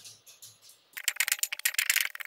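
Steel jaws of a three-jaw gear puller rattling and clinking against a gear on a gearbox shaft as they are fitted. A quick, dense run of sharp clicks starts about halfway through.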